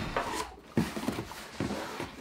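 A large cardboard box being handled and shifted: rustling and scraping, with a couple of soft knocks.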